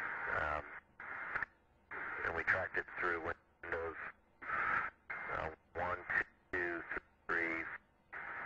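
A voice speaking over a radio link, heard as short clipped bursts that cut off suddenly between phrases.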